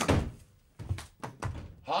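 A loud thud of a door banging as someone bursts into a room, followed by a few duller thumps.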